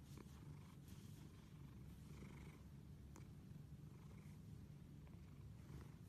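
Domestic cat purring steadily and quietly while being scratched around the cheek and chin.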